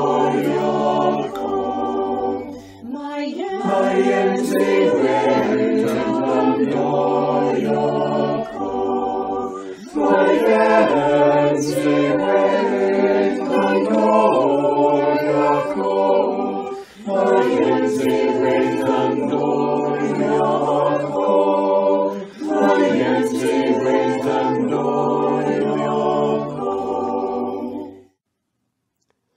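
Church choir singing a sung response in sustained phrases, with short breaths between phrases about every five to seven seconds.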